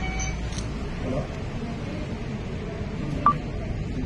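Indistinct chatter of a crowd in a hall, with a single short, sharp electronic beep a little over three seconds in.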